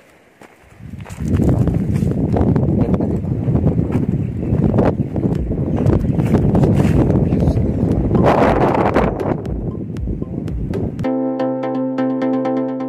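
Wind buffeting a phone's microphone: a loud, uneven rumbling rush with crackles, rising about a second in. It cuts off suddenly near the end, where electronic background music with a steady synth chord begins.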